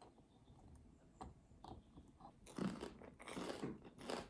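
A few light clicks of a table knife cutting the shell of a boiled egg, then from about two and a half seconds in, louder crunching of toast being bitten and chewed.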